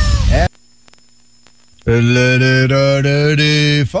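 A brief gap of faint steady hum, then one long note held at a single low pitch for about two seconds, sung or played as the tail of a song, which cuts off abruptly. It ends too soon: the last phrase of the song is missing.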